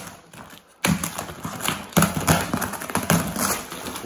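Cardboard box flap covered in packing tape being pulled open: irregular crackling, tearing and scraping of tape and cardboard that starts about a second in, with a few louder knocks.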